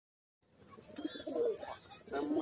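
Domestic pigeons cooing, starting about half a second in.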